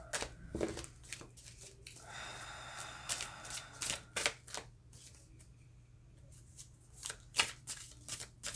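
A deck of tarot cards shuffled by hand: a string of sharp card snaps and clicks, a longer soft rustle about two seconds in, a quieter lull past the middle, and more snaps near the end.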